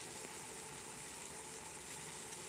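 Chicken breast frying in oil in a nonstick frying pan, a low, steady sizzle.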